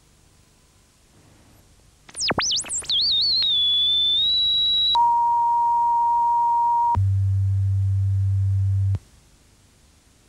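Electronic sine tones in a stepped sequence: a single pitch sweeps wildly down and up for about a second, settles on a steady high tone, then drops to a steady middle tone for two seconds and to a low tone for two seconds, which cuts off suddenly.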